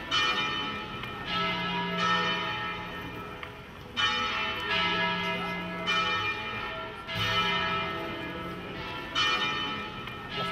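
Church bells ringing: an uneven sequence of strokes one to two seconds apart, at more than one pitch, each stroke ringing on as it fades.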